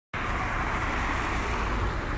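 Steady rush of road traffic noise from passing cars.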